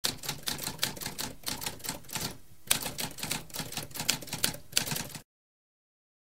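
Typewriter keys being struck in a fast run, with a short pause about halfway and a harder strike after it. The typing cuts off abruptly a little after five seconds.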